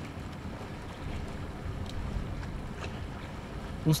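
Waterfront background ambience: a steady low rumble with wind noise.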